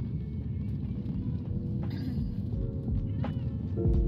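Low, steady road rumble inside a moving car's cabin, with soft background music coming in about halfway through.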